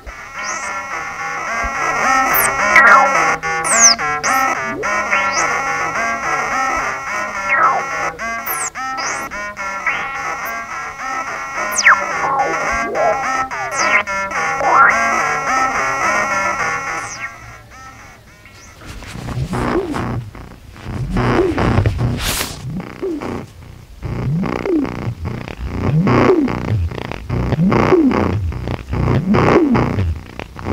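Doepfer Eurorack modular synthesizer playing a patch: a busy, bright texture over a stepping sequenced bass line, with quick pitch sweeps and clicks. About 17 seconds in it thins out and changes to a lower, darker part of swooping tones that pulse on and off.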